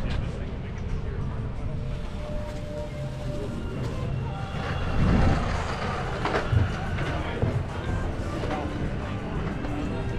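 Outdoor boardwalk ambience: passers-by talking and music playing, over a steady low rumble, with louder voices about five seconds in.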